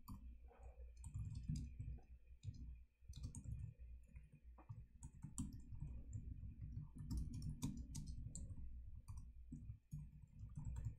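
Typing on a computer keyboard: quick, irregular key clicks.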